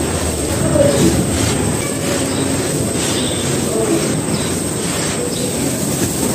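Hands crumbling dry clumps of sand and dirt, the loose grains pouring down onto a heap of dry sand, a continuous gritty crumbling noise.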